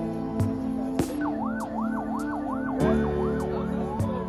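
Emergency vehicle siren in a fast yelp, the pitch rising and falling about three times a second. It starts about a second in and fades out before the end, over background music.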